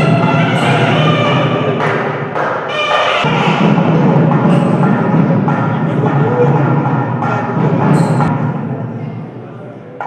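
Music with a gliding pitched melody over steady heavy drumming, fading near the end.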